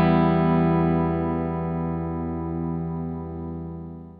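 Electric guitar chord from a Stratocaster with Leosounds Vintage Player 56 single-coil pickups, played through a BSM RMG treble booster into a Redstuff Fab30 amp. It rings out clean and slowly fades away.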